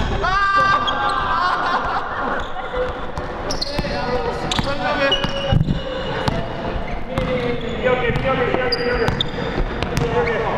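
Basketball being dribbled on a hardwood gym floor, with players' shouts and short high squeaks of shoes, ringing in a large hall.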